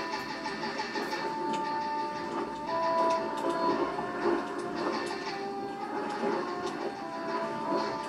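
Music with a melody of held notes stepping from one pitch to the next, over light, clicky percussion.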